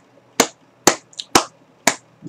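A steady run of sharp clicks, evenly spaced about two a second, four of them, with quiet between.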